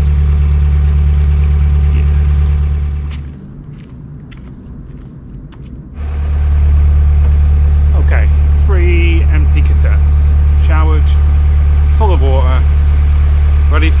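Narrowboat's diesel engine running under way, a steady low drone. It drops away about three seconds in and comes back, louder, about six seconds in.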